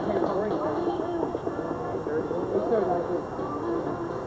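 Indistinct chatter: several people talking at once, their voices overlapping.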